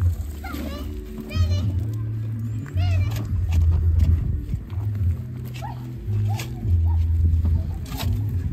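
Music with a deep bass line of held notes changing every second or so, with voices over it.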